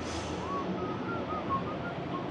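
A faint run of about seven short whistle-like notes, stepping up and down in pitch, over the steady background noise of a large, echoing factory hall.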